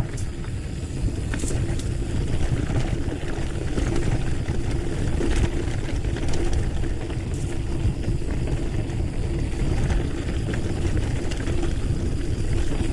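Mountain bike rolling along a dirt and gravel singletrack: a steady low rumble from the tyres on the trail, with scattered sharp ticks and clicks from stones and the bike's rattling parts.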